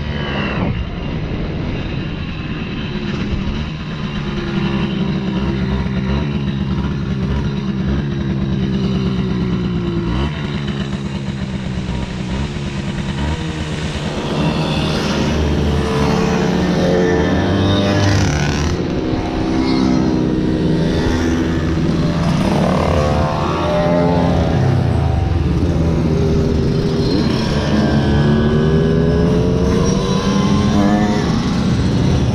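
Small Simson two-stroke moped engines running. The onboard moped's engine holds a fairly steady pitch at first; from about halfway, several mopeds rev up and down around it, their pitches rising and falling over one another.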